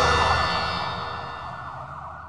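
Tail of a news programme's theme sting: a held chord of steady tones fading away.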